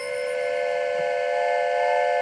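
Train whistle sounding a chord of several tones in one long steady blast, its pitch sliding up slightly as it starts.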